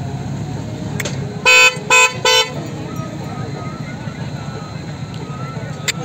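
A vehicle horn honked three times in quick succession, short beeps within about a second, over a steady low background rumble.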